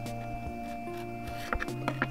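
Soft background music with steady held tones. Near the end come a few quick clicks of a small knife cutting through a piece of raw carrot onto a plastic chopping board.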